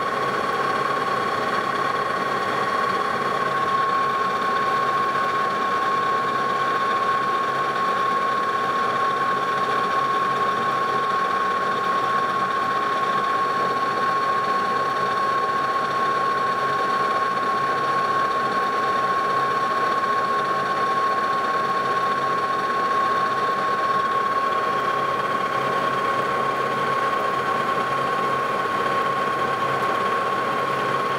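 Lodge & Shipley metal lathe running under power feed, its tool taking a cut along a steel shaft and turning it down to size. A steady high-pitched whine rides over the machine's running noise.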